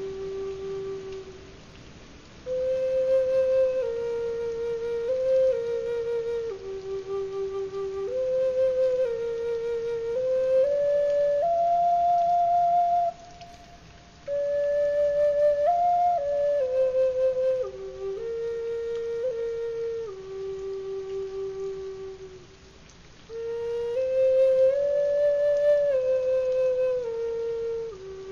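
Background music: a slow solo melody on a flute-like wind instrument, long held notes moving in small steps, in phrases broken by three brief pauses.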